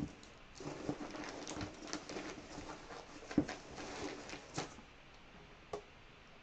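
Rummaging by hand: a run of light rustles and small clicks and taps as objects are moved and searched through, dying away near the end with one last click.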